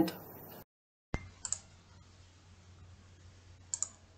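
Faint room tone with a low hum and a few small clicks: one sharp click about a second in, two quick ones just after, and another pair near the end, after a brief dead-silent gap where one recording cuts to the next.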